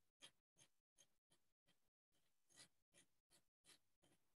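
Very faint, quick scratchy sounds, about ten of them at an uneven pace of two or three a second, with dead silence between them.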